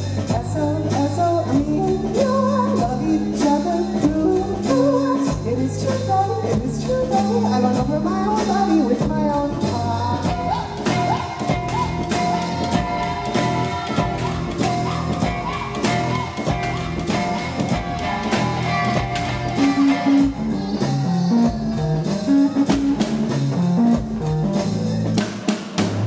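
Live indie band music: a woman singing over ukulele, bass notes and drums. Her singing moves freely for about the first ten seconds, then a long held note carries the middle stretch, and the low notes and drum hits step forward near the end.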